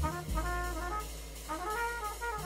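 Trumpet playing a slow jazz melody in held notes, one rising near the end, over a steady low note underneath from the band.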